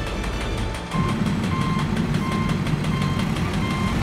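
A construction vehicle's reversing alarm beeping evenly, about five beeps at under two a second, over the low running of its engine, which starts about a second in.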